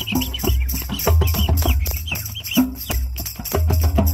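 A drum circle playing: hand drums, a djembe and congas, struck in a fast, dense rhythm, with deep low beats coming about once a second.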